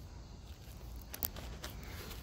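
Quiet outdoor background: a low steady rumble with a few faint, soft clicks a little past the middle.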